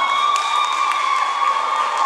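A long, steady high note held by a voice into a microphone, having slid down into it just before, over a crowd cheering and clapping.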